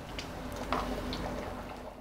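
Chayote sambar bubbling at the boil in an aluminium pressure cooker pot: a faint, steady bubbling with a few soft pops.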